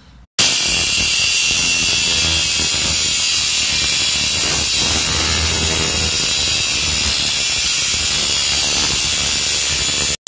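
DeWalt angle grinder with a cutoff wheel cutting through a rusty steel rod, throwing sparks. The loud, steady grinding starts abruptly about half a second in.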